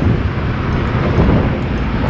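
Steady wind rush on the microphone of a moving motorcycle, with engine and road noise underneath and passing traffic.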